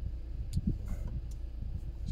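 A few light taps of a fingertip on the glass of a car's dashboard navigation screen, about half a second in and again near the one-second mark. The screen is not a touch screen. Beneath them runs a steady low hum.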